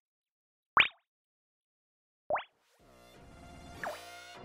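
Moog Model 15 synthesizer playing a "Leaky Faucet" preset: short plopping water-drip blips that sweep quickly upward in pitch, two of them about a second and a half apart. Near the end a sustained many-toned synth drone swells in, with one more drip that sweeps downward.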